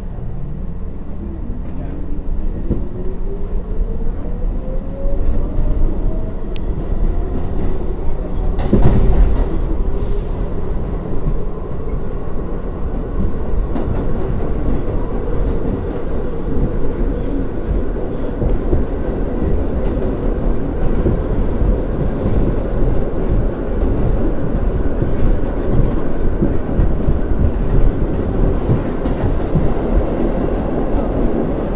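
R62A subway car pulling out and accelerating: the traction motor whine climbs steadily in pitch over the first several seconds, then settles into a steady rumble of wheels on rail. A single loud thump about nine seconds in is the loudest moment.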